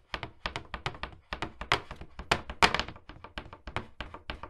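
A fast, uneven series of short knocks and taps, several a second, some much louder than others.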